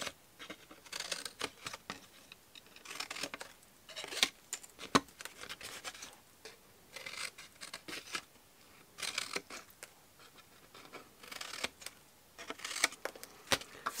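Scissors cutting through cardstock in short runs of crisp snips, separated by brief pauses as the card is turned.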